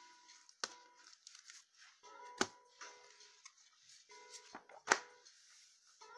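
Crinkling and snapping of plastic-bagged comic books being handled and swapped on a table, with three sharp snaps, the loudest near the end, over faint background music with repeating held notes.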